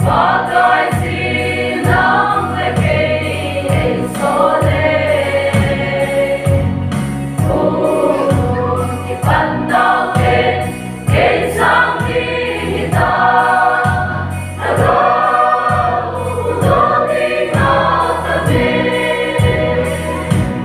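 Mixed choir of women and men singing a gospel song together, held notes swelling and falling phrase by phrase, over a steady bass accompaniment.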